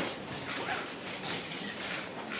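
Press photographers' camera shutters clicking in scattered short bursts, several within two seconds.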